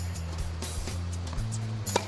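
Background music with a steady bass line; near the end, a single sharp crack of a tennis racket striking the ball on a forehand.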